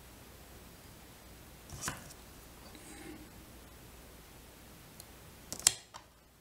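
Small handling sounds of fly-tying work at the vise: a soft click about two seconds in, a faint tick at five seconds and a sharp click near the end, over a low steady room hum.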